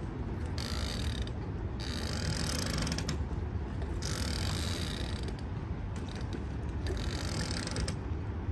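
A small boat on open harbour water: a steady low engine rumble, with four bursts of rattling hiss coming and going over it.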